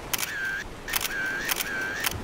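Several camera shutter clicks spread across two seconds, with a short, high, steady beep between them, like a camera's focus-and-shoot sound effect.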